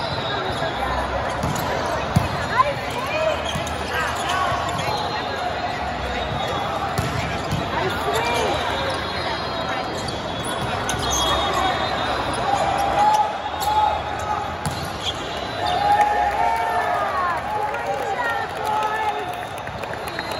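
Indoor volleyball rally in a large hall: sharp hits of the ball, two close together about two seconds in and more later, with sneakers squeaking on the court floor. Players call out over a background of crowd chatter.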